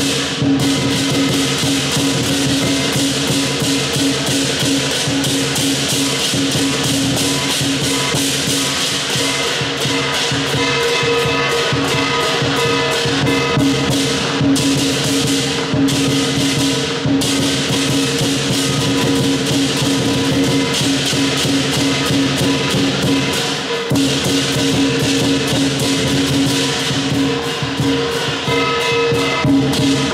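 Southern Chinese lion dance percussion: a large drum beaten in a fast, continuous rhythm with clashing cymbals and a gong whose ringing tones hang over it throughout.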